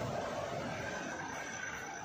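Steady outdoor street ambience: a low, even background noise with no distinct event.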